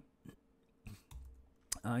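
A few separate computer keyboard key clicks, spaced irregularly in a quiet pause.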